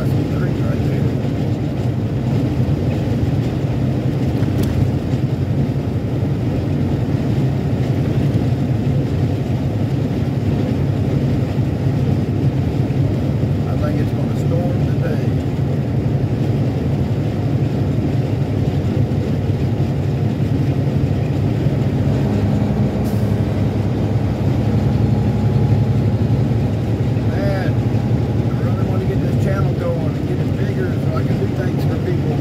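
Heavy truck's diesel engine running steadily at highway speed, heard from inside the cab together with tyre and road noise.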